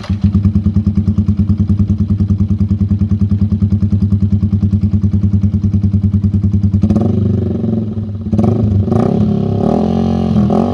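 Yamaha Sniper 155's single-cylinder four-stroke engine breathing through an SC Project S1 full-system exhaust, idling with a rapid, even pulsing. From about seven seconds in, the throttle is blipped, the pitch rising and falling with each rev.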